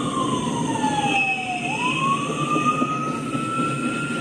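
Freight train cars rolling past with a steady low rumble, under a loud, high wailing tone that slides down in pitch, jumps up about a second and a half in, and then climbs slowly again.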